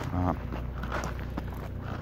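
Footsteps of a person walking, a few evenly paced steps, with a short voiced sound from the walker just after the start.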